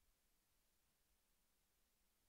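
Silence: a gap in the audio between the sponsor message and the forecaster's next words.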